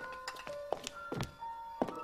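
Film score of sparse held notes that step to a new pitch every half second or so, with several dull knocks through it.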